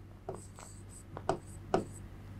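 A pen writing on an interactive whiteboard screen: a few short, sharp taps and scratches, over a faint steady low hum.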